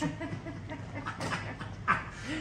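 A man laughing in short bursts, the loudest one near the end.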